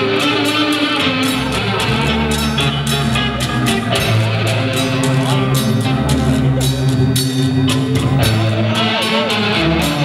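Rock band playing live: electric bass, electric guitar and drums, with regular drum and cymbal hits over steady bass notes.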